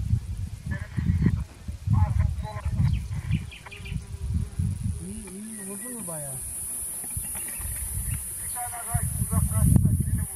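Distant voices calling out in short bursts, about a second in and again near the end, over irregular low rumbling from wind on the microphone.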